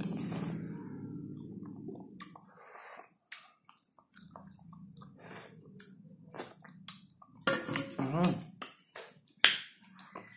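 Eating sounds from a man sipping from a large steel spoon: repeated sharp lip-smacking clicks and chewing, with a short voiced hum a little before the end.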